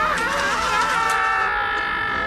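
Film soundtrack music with sustained notes, with wavering screams from the cartoon robots in the first second; steadier held notes follow.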